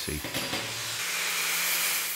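Right-angle grinder with a thin abrasive cutting disc cutting through carbon steel tube, a steady high hiss of the disc in the metal. About a second in the sound changes, with a steady low hum joining, as a flap disc grinds the cut end of the tube.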